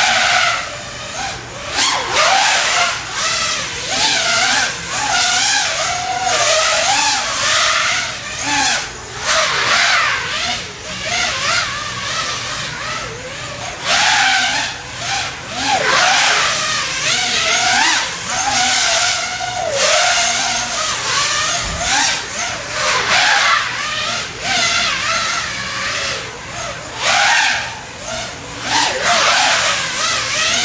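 Brushless motors and propellers of a 390-gram DJI HD FPV quadcopter whining as it races laps, the pitch wavering up and down constantly with the throttle. Loudness swells and fades every few seconds.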